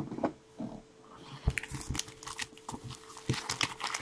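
Foil trading-card pack crinkling as hands handle it and open it: a run of short, sharp crackles, denser in the second half.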